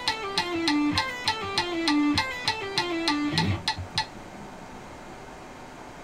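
Electric guitar playing a fast pull-off legato exercise at 200 beats a minute: short runs of notes stepping down in pitch, the same figure repeated over and over, stopping about four seconds in, after which only faint room hiss is left.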